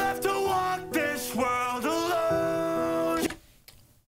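Sung intro of a rap song: a voice sings "You'll be left…" with long held notes over sustained chords. It stops abruptly a little over three seconds in.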